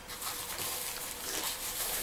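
Quiet rustling of soft plastic seedling cups and a clear plastic bag as the cups are handled and pulled apart from a stack.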